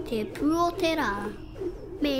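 A voice making a few drawn-out wordless sounds, the pitch sliding up and then down, then a couple of softer short sounds near the end.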